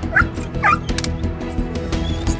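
A dog shut in behind a locked door cries out twice in the first second, short high calls, over background music.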